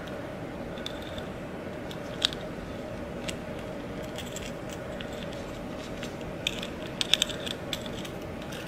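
Small metal keychain hardware, a chain and split ring, clinking as the acrylic keychain is handled. There are a couple of isolated clicks, then a quick run of clicks near the end, over a steady room hum.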